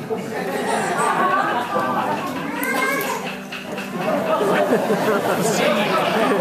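Several people's voices chattering at once in a large hall, with no single clear speaker.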